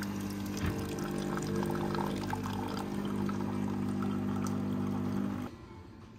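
Office coffee vending machine dispensing coffee into a mug: a steady pump hum with the liquid pouring, cutting off about five and a half seconds in.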